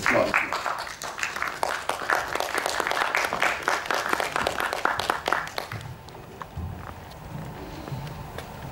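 Audience applauding for about six seconds, then dying away, followed by a few footsteps on a wooden stage.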